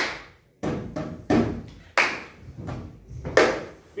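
Hand claps and palm slaps on a school desk in an even rhythm, about six strokes roughly two-thirds of a second apart, each dying away quickly: the first step of a cup-rhythm pattern.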